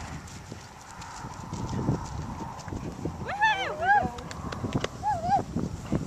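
A horse whinnying: a wavering, high call about three seconds in, then a shorter one about five seconds in, over a low rumble.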